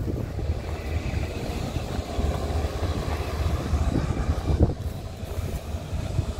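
A steady low rumble that wavers in level, with a few faint knocks about four seconds in.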